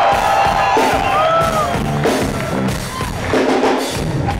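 Live rock band playing, with the crowd cheering and whooping over it; gliding pitch bends are heard.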